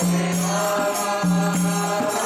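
A harmonium playing a devotional melody in held notes, with a man's voice chanting along.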